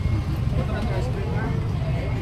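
Busy street ambience: background voices of people nearby over a steady low rumble.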